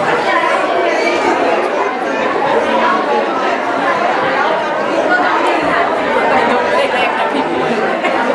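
Many people talking at once in a large hall: a steady hum of overlapping conversation with no single voice standing out.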